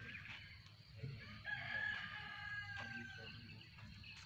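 A rooster crowing faintly: one long drawn-out call of about a second and a half, sinking slightly in pitch, over a low background rumble.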